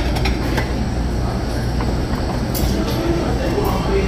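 Restaurant dining-room noise: a steady low rumble with indistinct background voices and a few short, light clicks.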